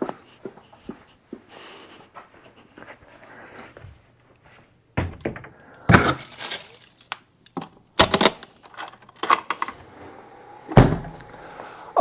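A heavy lithium battery lowered by its handles into a chest freezer, knocking against it several times, then a deeper thud near the end as the freezer lid is shut.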